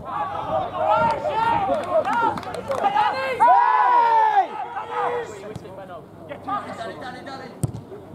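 Men's voices shouting on an open football pitch during play, with one long, loud call about three and a half seconds in; the shouting thins out in the last few seconds. A single sharp knock comes near the end.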